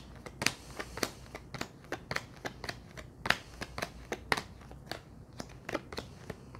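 Tarot cards being shuffled and handled by hand: a run of irregular crisp clicks and slaps of card stock, a few a second.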